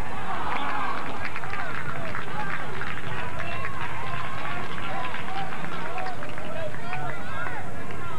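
Several overlapping voices shouting and calling out during a soccer game, none of them clear enough to make out, over a steady low background rumble.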